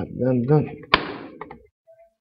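A man's low wordless voice, like a hum or drawn-out filler sound, then a single sharp knock about a second in, after which it falls nearly silent.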